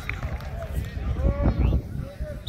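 Several people's voices talking and calling out at once, over a low rumble that swells about two-thirds of the way through.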